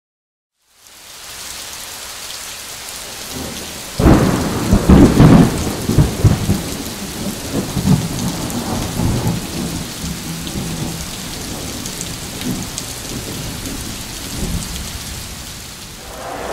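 Rain falling steadily. About four seconds in comes a loud clap of thunder that rolls and rumbles on for several seconds before dying back under the rain.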